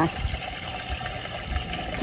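An engine idling with a low, uneven rumble.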